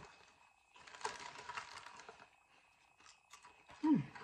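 Faint crunching of thin potato chips being chewed, for about a second and a half starting near one second in.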